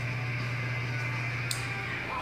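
A steady low hum in the room, with a faint click about one and a half seconds in.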